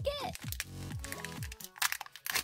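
Peel-off seal being pulled from the toy half of a Kinder Joy plastic egg, crinkling, with a few sharp crackles near the end.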